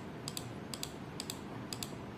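Laptop keys clicking at about two presses a second, each press a quick double click, over a faint steady hiss.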